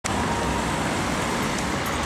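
Steady street noise: a low, even rumble of road traffic with no distinct passing vehicle.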